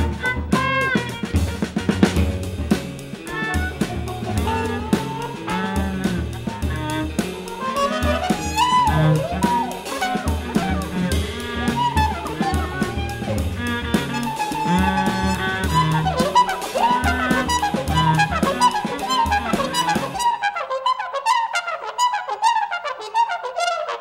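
A free jazz quartet plays live: cornet, drum kit, hollow-body electric guitar and viola together in a busy improvisation. About twenty seconds in, the drums and the low end drop out, leaving the cornet out front in a high register.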